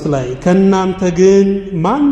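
A man's preaching voice in a drawn-out, chant-like delivery: a falling phrase, one long held note, then a quick upward slide near the end.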